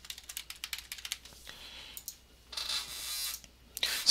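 Keys tapping on a computer keyboard for about the first second, followed by a few scattered clicks. A soft hiss lasts about a second near the end.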